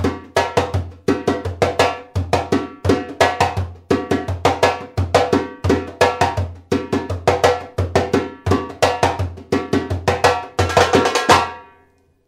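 Timbal, a tall Brazilian hand drum, played solo with bare hands in a fast samba reggae pattern of strokes that ring briefly. The playing stops suddenly just before the end.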